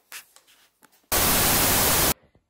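Loud TV-static hiss, an editing transition effect, starting suddenly about a second in after a faint knock and holding at a flat level.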